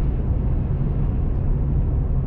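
Steady low rumble of road and engine noise inside a moving vehicle's cabin at driving speed.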